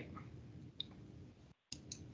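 A few faint clicks at a computer, one about halfway through and two close together near the end, over quiet background hiss, with a brief moment of dead silence just before the last clicks. They come as the presentation slide is being changed.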